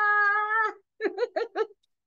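A woman's voice drawing out a high, sung greeting ("holaaa") on one steady pitch, then about four short laughing syllables a second in.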